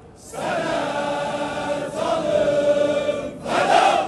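A crowd of men chanting an Azeri mourning lament (mersiye) together, their voices held on long notes; near the end comes a louder burst of crowd sound.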